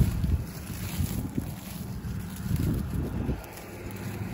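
Wind buffeting the microphone: an uneven low rumble that rises and falls, easing off briefly near the end.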